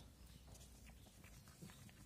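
Near silence with a few faint, short clicks: a cat eating food off a concrete floor.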